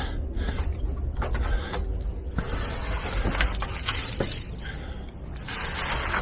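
Footsteps climbing stone steps, a few scattered scuffs and taps, over a steady low rumble.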